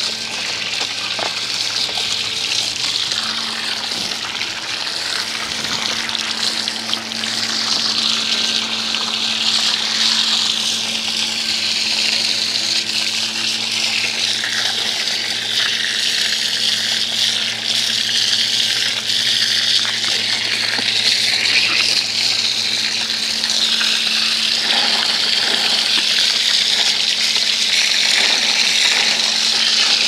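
Water spraying steadily from a hose nozzle and splashing over a dirt bike's wheels and frame as it is rinsed, with a steady low hum underneath that partly drops out near the end.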